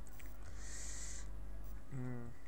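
Steady low hum of the recording's background, with a brief soft hiss about half a second in.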